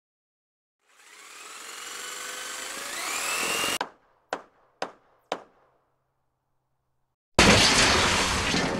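Intro sound effect: a power tool's motor spins up, its whine rising in pitch for about three seconds before cutting off abruptly. Three sharp knocks about half a second apart follow, and near the end a loud burst of noise starts.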